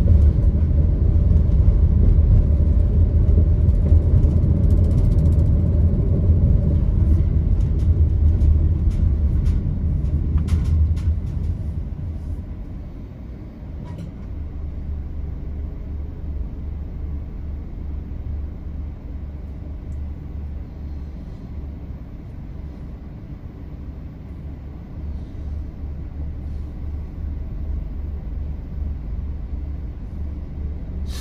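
Low road and engine rumble of a vehicle driving through city traffic, which drops to a quieter steady rumble about twelve seconds in as the vehicle comes to a stop at a red light and idles.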